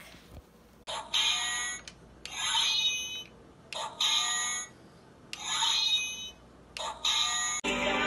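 Short bursts of tinny electronic music from a toy robot, five phrases about a second and a half apart. Fuller music starts near the end.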